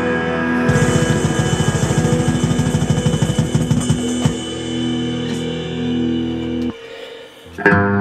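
Hard rock music from distorted guitar and a drum kit: a fast, even drum roll of low strokes for a few seconds, then a held chord rings out and cuts off. A loud hit comes near the end.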